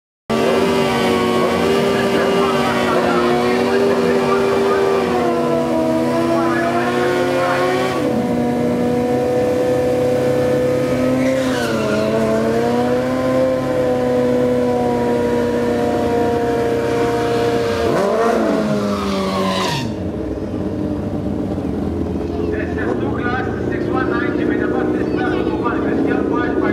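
Sport motorcycle engine held at high revs during a drag-racing burnout, its rear tyre spinning on the track, for about twenty seconds. It then drops off suddenly to a lower, rougher engine sound.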